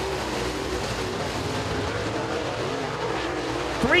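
Dirt super late model race cars' V8 engines running at racing speed around a dirt oval, a steady drone of several engines under load.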